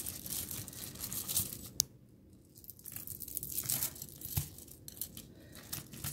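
Hands rummaging through a pile of charm bracelets: rustling with scattered light clicks and one sharper click, going quieter for about a second partway through.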